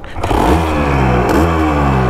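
1975 Can-Am 250 TNT's two-stroke single-cylinder engine catching about a quarter second in and running, blipped twice, with the pitch falling after each rise.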